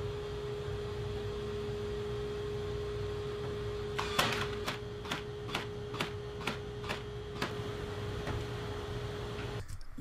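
A cordless brad nailer firing a run of brads into solid pine edging on a plywood door panel. The shots are sharp and come about two a second, starting about four seconds in and growing fainter after about seven seconds. A steady hum runs underneath.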